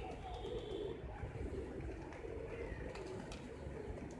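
A large flock of feral rock pigeons cooing together in a steady, overlapping chorus, with a few higher chirps over it.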